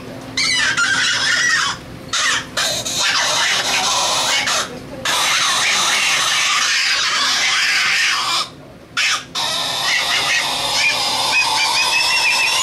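Squealing, squawking reed sounds blown through a saxophone mouthpiece held to the lips, in rough bursts broken by short pauses, the longest about eight and a half seconds in.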